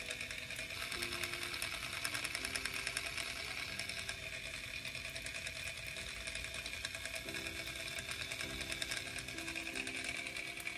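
Miniature toy blender's tiny electric motor running steadily, a high buzzing whir with a fast rattle, as it blends tomato soup.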